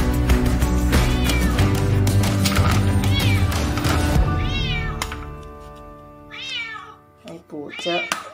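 Background music with a heavy beat that fades out about five seconds in, while a cat meows repeatedly, each call rising and falling in pitch.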